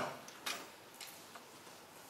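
Quiet room tone in a pause between spoken sentences, with a short click about half a second in and a fainter one about a second in.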